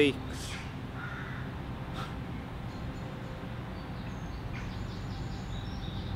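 Steady, low outdoor background noise in woodland, with a faint bird call about a second in and a light click at two seconds.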